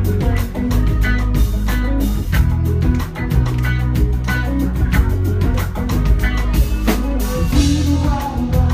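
Live band playing: an acoustic guitar strummed in a steady rhythm with an electric guitar and drums.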